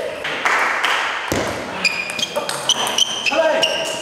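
Table tennis balls clicking on tables and bats: a string of short, sharp ticks, each with a brief high ring, over indistinct voices.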